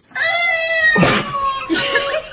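Dancing cactus toy repeating a child's voice back in a sped-up, high-pitched squeaky voice: one long drawn-out call, then a second of choppier chatter.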